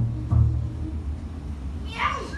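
The closing notes of a double bass and saxophone duo: low sustained double-bass notes with a short saxophone note near the start, dying away about a second in. Crowd noise starts to rise right at the end.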